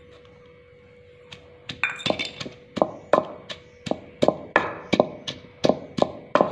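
Wooden pestle pounding green chillies in a large clay mortar (kunda) for chutney, in regular strikes about three a second from about three seconds in. Just before the pounding starts, a few metal clinks from a steel bowl against the mortar.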